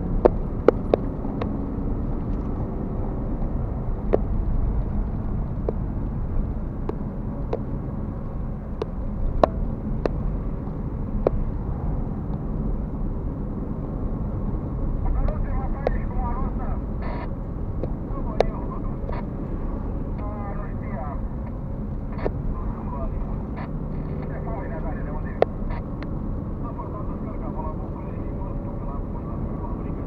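Car interior while driving at road speed: a steady low rumble of tyres and engine, with sharp clicks and knocks scattered throughout.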